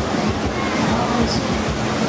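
Beach ambience: several people's voices over a steady rush of surf and wind, with a steady low hum underneath.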